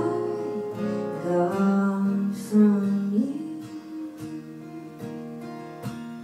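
Acoustic guitar strummed at a slow, steady pace, with a woman's wordless held sung note that slides up about three seconds in. In the second half the guitar strums go on alone, gradually softer.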